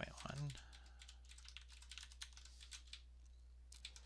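Computer keyboard typing: faint, quick runs of keystrokes that thin out near the end.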